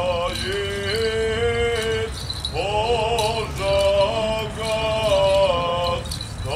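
Male clergy chanting a liturgical hymn of a graveside requiem in long, held notes that slide from one pitch to the next, with a short pause just after two seconds in.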